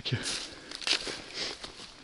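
Footsteps on dry fallen leaves and twigs, a few irregular rustling steps.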